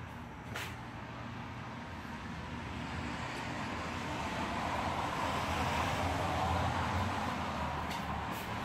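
A vehicle driving past, its road noise building gradually, peaking about six to seven seconds in and then starting to fade.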